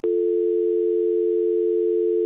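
Telephone dial tone: two low steady tones sounding together without a break.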